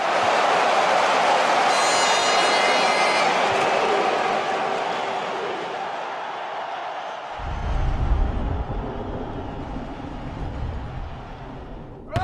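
Live ambient sound of a five-a-side football match on an artificial pitch: an even, noisy din that slowly fades. A low rumble joins it about seven seconds in.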